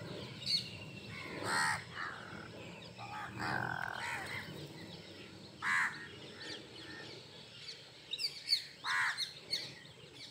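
House crows cawing, several separate harsh calls spaced a few seconds apart, with a cluster of brief high chirps near the end.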